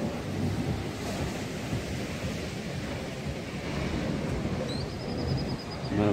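Heavy ocean surf breaking on a stony beach, a steady low noise, with wind buffeting the microphone. A brief faint high whistle comes near the end.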